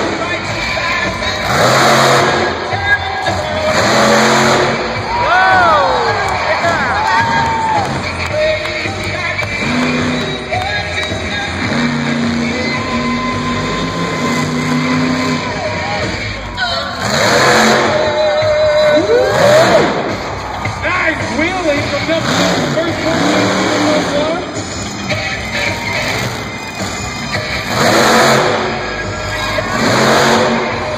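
Monster truck engine revving hard in loud bursts every few seconds as the truck drives its freestyle run, with arena music and a PA voice mixed in underneath.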